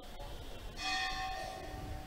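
A temple bell struck once about three-quarters of a second in, ringing on with several steady tones that fade over about a second.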